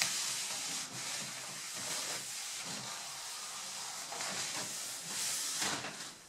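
A hand rubbing a white pad back and forth over the old shellac finish of a walnut-veneered cabinet top, a steady scrubbing with slight swells from stroke to stroke, dulling the surface before fresh shellac is applied.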